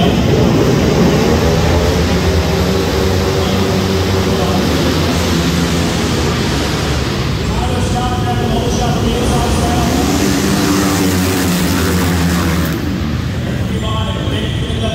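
A pack of 450cc flat-track race motorcycles launching off the start line together, their single-cylinder four-stroke engines revving up and shifting through the gears, many overlapping engine notes repeatedly rising and falling in pitch. The sound carries in a large indoor arena hall and drops somewhat about thirteen seconds in as the pack moves away.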